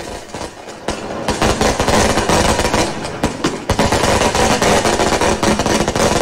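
Fireworks going off in rapid succession: a dense string of bangs and crackles that builds up about a second in and keeps going.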